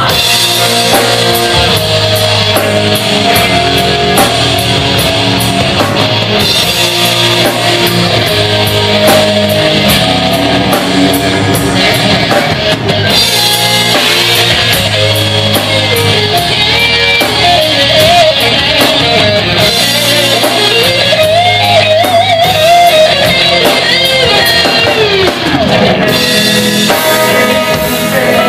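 A rock band playing live in an instrumental passage: electric guitars, bass guitar and a drum kit. A lead line bends and wavers in pitch through the second half.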